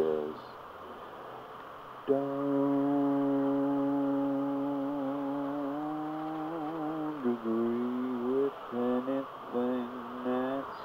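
A voice holding one long sung note for about five seconds, wavering slightly near its end, then breaking into a few shorter notes.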